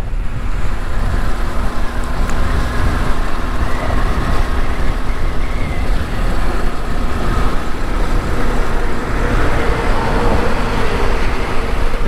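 Motorcycle riding at speed: steady, loud wind rush over the microphone and road noise, with a faint engine hum underneath.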